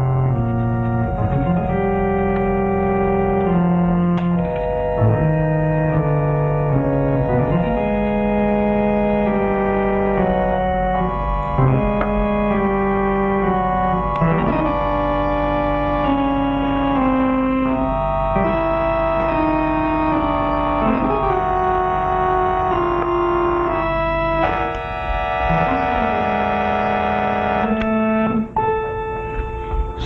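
Theme music for the opening credits, played on organ: slow, sustained chords that change every second or two.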